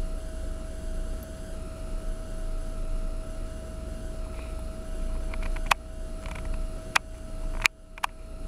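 Steady low rumble and hum of room background noise, with a few sharp clicks in the last few seconds.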